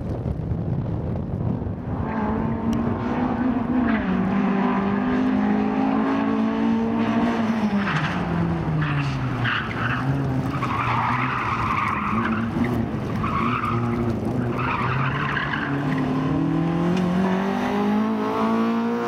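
Rally car's engine revving hard and dropping back as it is driven through tight turns, with the tyres squealing several times in the middle of the run. The engine pitch climbs again near the end as it accelerates away.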